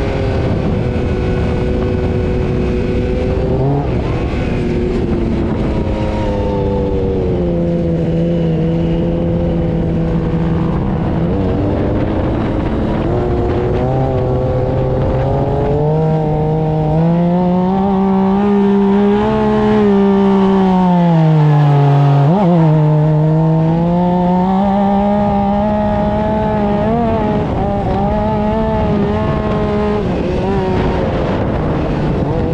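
Dune buggy engine heard from the cockpit while driving on sand, its pitch rising and falling with the throttle. Near two-thirds of the way in, it dips low, then briefly revs sharply higher.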